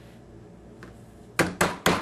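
Ball peen hammer striking a sheet of 10 mil (30 gauge) copper, hammering a texture into it: three quick, sharp blows about a second and a half in.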